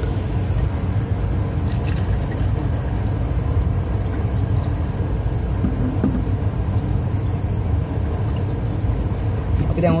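Steady low rumble of a running machine, even and unbroken throughout, with a short burst of speech at the very end.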